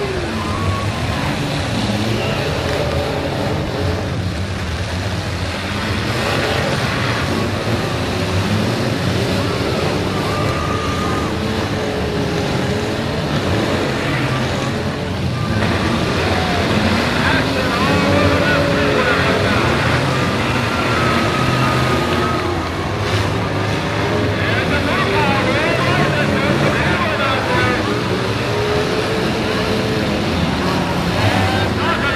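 Several stock demolition derby cars running at once, their engines revving up and down as they manoeuvre and collide in the arena, with crowd voices mixed in.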